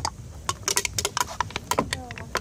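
A drinks can crumpling under the front bumper of a BMW E61 as its air suspension lowers the car onto it: a quick, irregular run of clicks and crackles.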